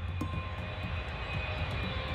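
A twin-engine jet airliner's turbofan engines at takeoff thrust as it rotates off the runway: a steady rumble with a hiss above it.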